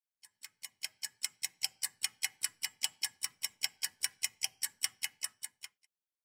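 Mechanical watch ticking steadily, about five ticks a second. It fades in over the first second and fades out just before the end.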